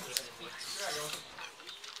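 Sleeved trading cards being handled on a playmat: a sharp click, then a brief rustle of cards, under low voices in the room.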